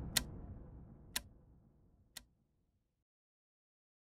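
Logo-outro sound effect: three sharp ticks about a second apart, each fainter than the last, over a low rumble that dies away.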